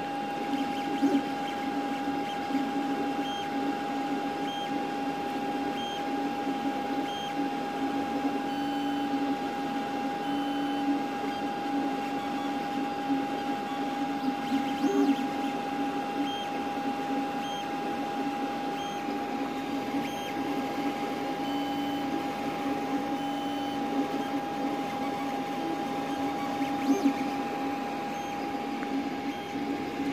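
Creality CR-X dual-extruder 3D printer printing: its stepper motors whir through short moves in shifting pitches over a steady high hum.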